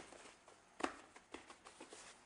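Hands pulling and pressing a sheet of rolled-out yeast dough on a floured wooden counter: a few faint soft taps and rustles, the clearest just under a second in.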